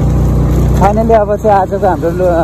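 A motor vehicle's engine running steadily on the move. A man's voice starts over it about a second in.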